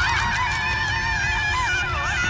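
A cartoon character's long, high-pitched screech, held on one slightly wavering pitch, over a steady low rumble.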